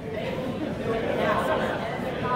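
Audience chatter in a large hall: many voices talking over each other at once, with no single speaker standing out.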